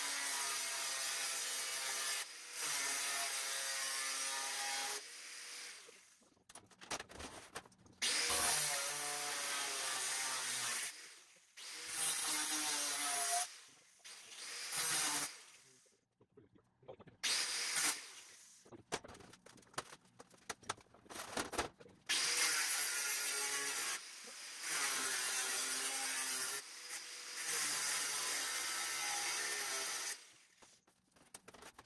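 Angle grinder with a thin cutting disc cutting sheet steel along a marked curved line, scoring it rather than cutting through so the piece can be snapped off. It runs in about nine passes of one to five seconds each with short pauses between, its whine wavering in pitch.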